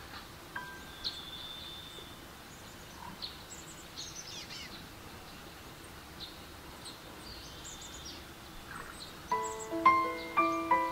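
Quiet nature ambience with scattered faint bird chirps and short whistles. Near the end a slow melody of soft, ringing piano notes begins.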